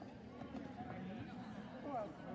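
Indistinct, distant voices talking in a large echoing hall, with no clear words.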